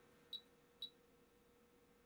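Agilent 34401A 6.5-digit multimeter powering up: two faint, very short high-pitched chirps about half a second apart, otherwise near silence with a faint steady hum.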